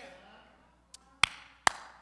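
Three short, sharp knocks or claps in the second half of the pause, the first faint and the other two loud, against a hushed room.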